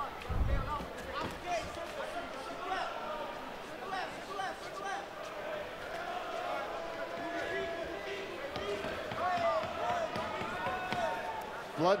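Indistinct shouting voices from around the MMA cage, some calls held, over fight-night arena ambience. A dull low thump comes about half a second in, typical of a fighter's bare feet or a strike on the cage canvas.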